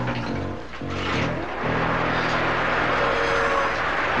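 Electric model train running on the layout's track, a steady motor hum and rolling rumble that grows louder about a second in, under background music.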